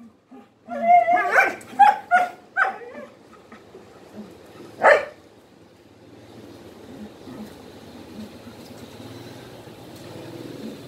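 Aspin dog barking in play: a quick run of five or six sharp barks in the first three seconds, then one more loud bark about five seconds in.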